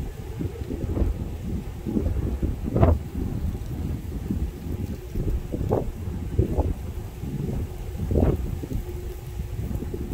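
Wind buffeting the microphone in irregular gusts, over the low rumble of a freight train's cars rolling past.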